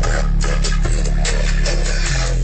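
Bass-heavy music with a beat, played loud through a single 8-inch Rockford subwoofer powered by a 250 W Ground Zero amplifier, heard inside the car's cabin. A deep, steady bass line carries under the beat.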